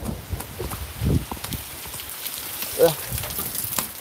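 Footsteps of a person running, with rain and wind noise on a phone's microphone and a couple of short vocal sounds from the runner.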